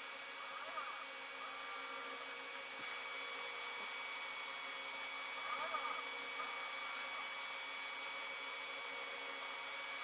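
Creality Halot-Mage 8K resin 3D printer running a print: a steady fan hum with a thin whine. About every five seconds the Z-axis stepper motor whirs briefly, its pitch rising, holding and falling, as the build plate peels the part from the vat and lowers again for the next layer.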